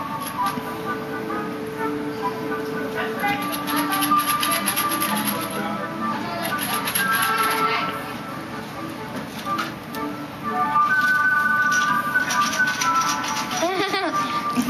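Packages of small hardware fasteners shaken as rattles, the loose metal parts clattering inside in several spells of quick rattling. Background music plays throughout.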